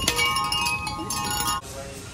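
Door chime or bells ringing as a shop door is opened: a cluster of steady, bell-like tones that starts suddenly and cuts off after about a second and a half.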